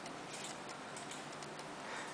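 Quiet room tone: a low steady hiss with a few faint, light ticks.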